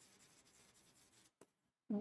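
Faint scratching of a stylus writing on an interactive display screen, with one light tap about one and a half seconds in.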